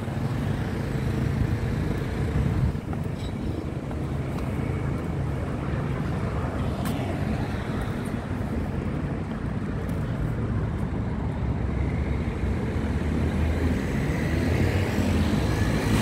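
City road traffic running steadily, a continuous low rumble of passing cars that swells a little toward the end.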